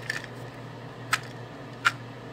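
Two short, sharp clicks under a second apart as plastic supplement bottles are handled, over a steady low hum.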